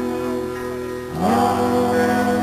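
A live rock band playing: held guitar and bass chords ring out, fade slightly about a second in, then come back louder with an upward slide in pitch.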